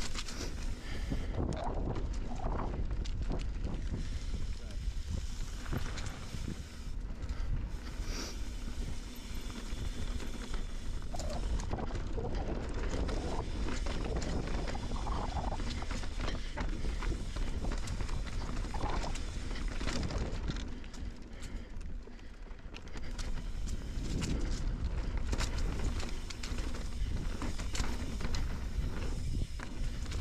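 Mountain bike riding down a dirt singletrack: a steady low rumble of tyres and wind on the helmet-level microphone, with scattered rattles and knocks from the bike over rocks and roots.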